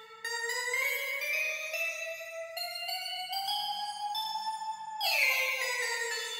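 Omnisphere software synth sounding a held note that climbs slowly in pitch by small steps. About five seconds in, a fresh, brighter note strikes and slides back down. These are the melody notes being auditioned as they are placed in the FL Studio piano roll.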